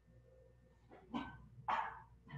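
A dog barking twice, short sharp barks about half a second apart in the second half, the second louder.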